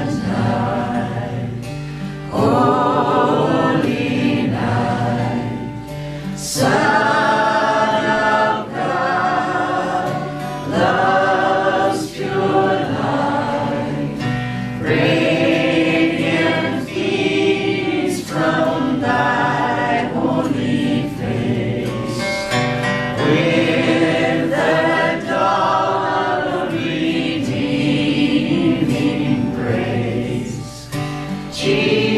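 A man and a woman singing together over two strummed acoustic guitars in a live folk performance.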